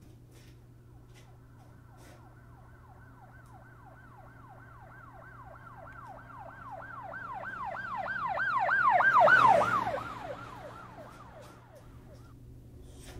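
Emergency vehicle siren in a fast yelp, about four rising-and-falling sweeps a second. It grows steadily louder to a peak about nine seconds in, then fades and drops slightly in pitch as the vehicle passes. A steady low hum runs underneath.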